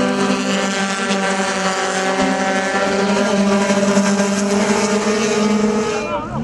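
Touring race car engine running at a steady, held pitch as the car laps the circuit.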